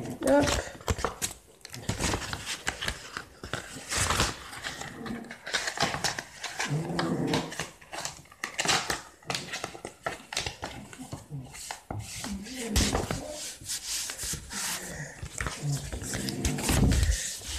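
Paper and cardstock being handled and pressed flat on a cutting mat: repeated rustles and light knocks, with a few short, low voice-like sounds in between.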